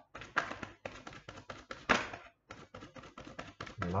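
A tarot deck being shuffled by hand: a rapid, uneven run of cards clicking and flapping against each other, with a louder slap about two seconds in.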